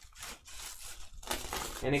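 Bubble wrap crinkling and rustling in irregular bursts as it is handled, with one spoken word at the very end.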